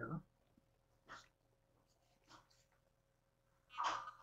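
Near silence: room tone, with a couple of faint, brief soft noises and the tail and onset of a woman's speech at the edges.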